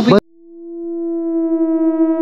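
A man's voice is cut off abruptly, and after a moment of silence a steady synthesizer drone, one held note with overtones, fades in and holds.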